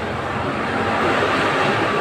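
Steady background noise of the room during a pause in a man's talk, an even hiss without distinct events.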